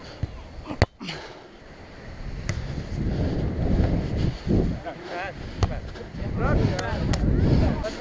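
A volleyball served by hand, with one sharp smack about a second in. Then low wind rumble on the camera microphone, with faint distant shouts of players and a few more light ball contacts during the rally.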